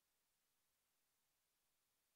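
Near silence: only a faint, even hiss with no other sound.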